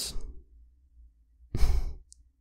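A man's sigh: one short, breathy exhale close to the microphone, about one and a half seconds in.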